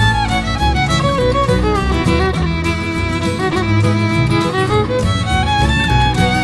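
Instrumental break of a western song: a fiddle plays the melody over a steady low accompaniment.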